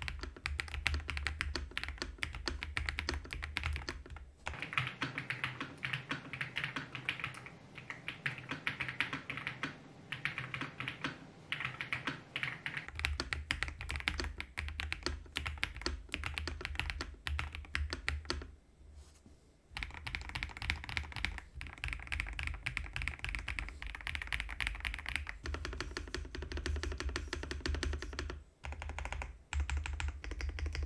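Fast typing on an Ajazz AK820 mechanical keyboard: a dense run of key clicks and bottom-outs, pausing briefly twice in the second half.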